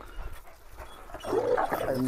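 Kangal dog giving a rough warning growl or snarl at another dog, rising in the second half.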